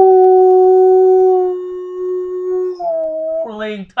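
A man imitating a wolf howl with his voice: one long howl held on a steady pitch, then a few shorter calls that break higher near the end.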